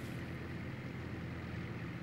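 Crawler tractor engine running steadily while it pulls a plough, heard as a low, even drone.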